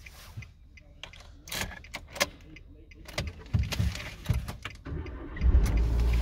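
Car keys jangling and clicking in the ignition of a Nissan Micra K12, then the engine starts about five and a half seconds in and settles into a steady idle. The start shows that the immobiliser accepts the newly programmed key.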